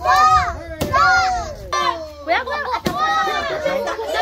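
Children shouting and chanting in a string of loud, rising-and-falling calls. A few sharp knocks of a wooden stick striking a piñata come through: one at the start, one just under a second in, and one near three seconds.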